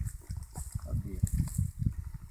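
Wind buffeting the microphone: low, irregular rumbling thumps, with a few faint clicks.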